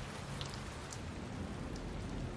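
Steady rain, with water dripping off a roof eave and a few separate drops striking close by.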